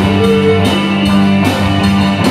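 Rock band playing an instrumental passage live: electric guitars holding chords over bass and drum kit, with steady drum hits.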